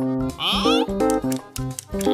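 Cartoon background music of short, bouncy plucked notes, with a brief wavering high-pitched animal-like cartoon call about a third of a second in.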